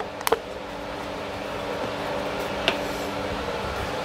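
Steady hum of the brewery's clean-in-place pump running, loud enough to drown out talk. An aluminium can being handled on a bench gives two sharp clicks about a quarter second in and a fainter one near three seconds.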